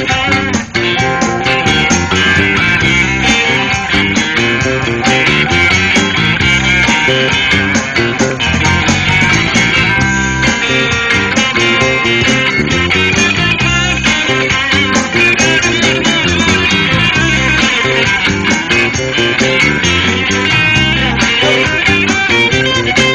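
Live blues-rock band playing an instrumental section: electric guitars over bass guitar and drums, with a lead line wavering in pitch in the upper range.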